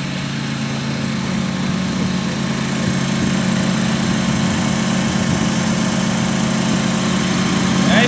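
A steady engine drone, slowly growing louder.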